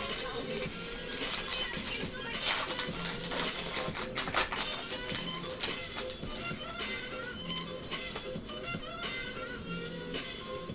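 Background music with the foil wrapper of a trading-card pack crinkling and tearing open, the crackle loudest from about two to four and a half seconds in.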